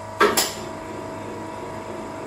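Two sharp metallic clacks in quick succession just after the start, from a stainless steel coil winding machine and the tube it is coiling, over the machine's steady electrical hum and whine.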